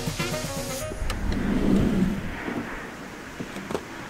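Background music cuts off about a second in, giving way to highway traffic: a vehicle passing, swelling and then fading. Two light clicks come near the end.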